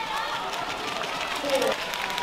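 Badminton court sounds: shoes squeaking on the court mat over a steady murmur from the arena crowd, with one louder short squeak or call about one and a half seconds in.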